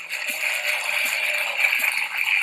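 Studio audience applauding: a steady patter of many hands clapping.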